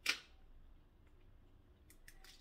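A single sharp plastic snap right at the start, the flip-top cap of a caramel sauce squeeze bottle being opened, followed by a faint tick near the end.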